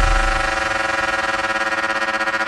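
Electronic dance-music transition: a held synthesizer chord with a siren-like tone, its deep bass fading away over the first second.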